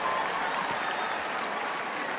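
Theatre audience applauding, a steady patter of clapping.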